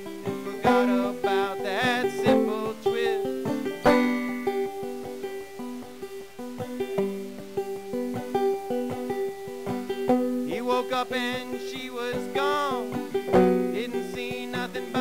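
Instrumental break in a folk song: a picked acoustic string instrument plays ringing notes over a steady low drone. Near the end a bending, wavering melody line comes in above it.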